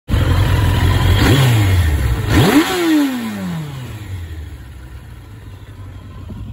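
1996 Suzuki RF900R inline-four engine idling and blipped on the throttle. There is a small rev about a second in, then a sharp rev at about two and a half seconds that falls back to idle, after which the sound grows quieter.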